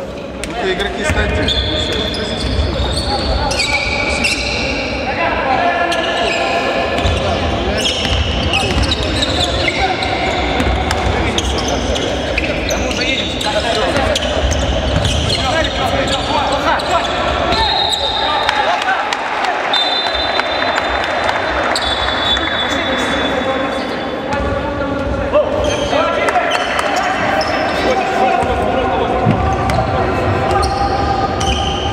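Basketball game sound in a large echoing gym: a ball bouncing on the hardwood court over and over, with players' and spectators' voices calling out.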